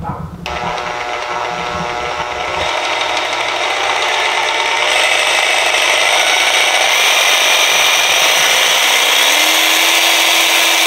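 Makita XVJ03Z 18V cordless jigsaw running with no load, its blade stroking in the air. The motor starts about half a second in, builds in speed and loudness over the first few seconds, then runs steadily. A low steady hum joins near the end.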